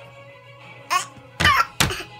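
Short, loud coughing sounds, three bursts close together starting about a second in, over steady background music.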